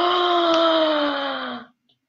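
A woman's voice holding one long, drawn-out vowel of dramatic suspense for about a second and a half, its pitch sinking slightly before it stops.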